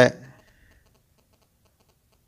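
A man's voice finishes a word, then faint, rapid light clicking continues through the pause in the speech.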